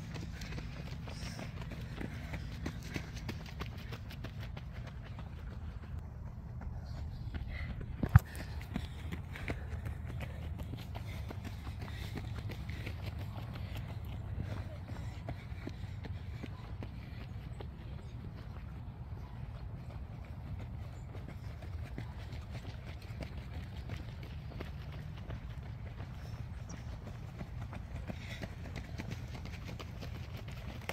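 Footsteps of cross-country runners on a dirt trail as they pass close by, over a steady low rumble. One sharp knock comes about eight seconds in.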